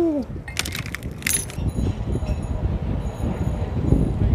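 Low outdoor rumble, like wind on the microphone, with a few sharp clicks about half a second to a second and a half in, as of small metal objects being handled.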